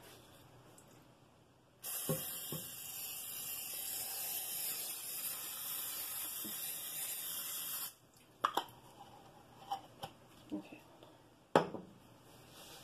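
Aerosol cooking spray hissing onto a glass loaf pan in one continuous spray of about six seconds that starts and stops abruptly, greasing the pan. A few light knocks follow, the loudest near the end.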